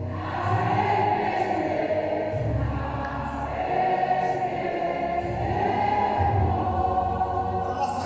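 A church choir singing a slow thanksgiving hymn, voices holding long notes, with a low bass line swelling and fading beneath.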